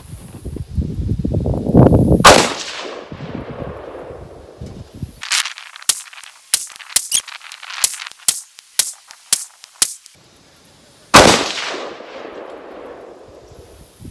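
Two rifle shots from a 6.5 Grendel AR-15 with a 20-inch heavy barrel, firing Hornady Black 123 gr ELD Match, the first about two seconds in and the second about nine seconds later, each a sharp crack with a long fading tail. Between the shots comes a quick run of light clicks.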